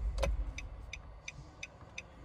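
A car's indicator relay clicking steadily, about three ticks a second, starting about a second in. Before it, a single sharp click and a low car rumble that fades away in the first half second.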